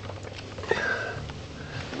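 A man sniffing and breathing in through his nose close to the microphone, with a low steady hum underneath.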